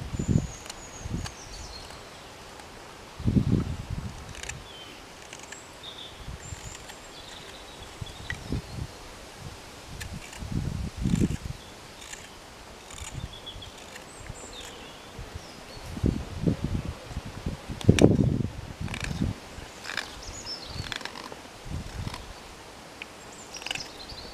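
Hook knife cutting shavings from the hollow of a wooden spoon bowl in short scraping strokes, with gusts of wind rumbling on the microphone and one sharp knock in the second half.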